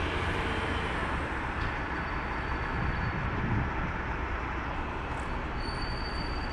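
Steady engine rumble with a broad hiss, holding an even level throughout.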